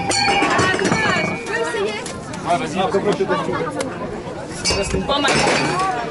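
Metal cans clinking and clattering as a thrown ball hits them in a can-knockdown game, plainest near the end, over people talking.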